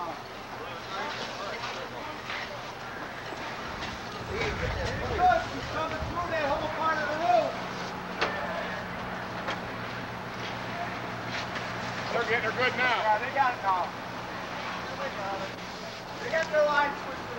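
Indistinct voices calling out in two stretches, over a steady low engine drone that settles in about six seconds in, from a fire engine running at the scene.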